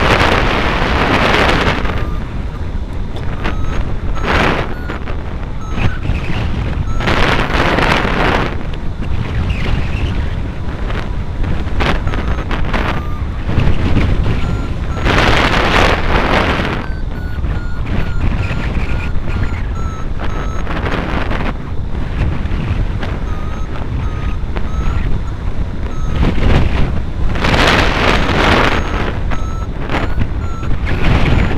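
Wind rushing over the microphone of a hang glider in flight, swelling in gusts several times, with a variometer sounding short repeated beeps whose pitch drifts up and down, the climb tone that signals rising air.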